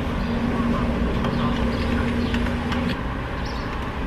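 Gas station fuel dispenser humming steadily, then stopping about three seconds in, with a few light clicks as the nozzle is handled and hung back, over a low rumble.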